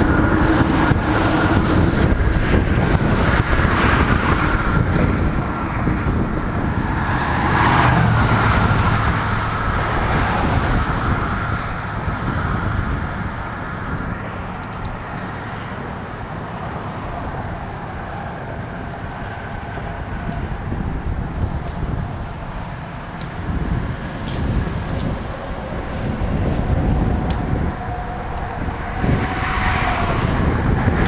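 Cars and trucks on a divided highway passing close by, with wind buffeting the microphone of a moving bicycle. The rumble swells as vehicles go by and eases off in the middle.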